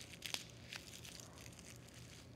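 Plastic bubble wrap crinkling faintly as fingers press it onto wet watercolor paper, with a few light crackles in the first second and quieter after.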